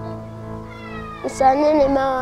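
A young girl singing a slow, drawn-out melody over a soft sustained music bed. Her voice comes in strongly about one and a half seconds in, holding a long note that bends gently in pitch.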